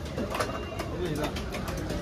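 Indistinct background voices with scattered light knocks and clicks.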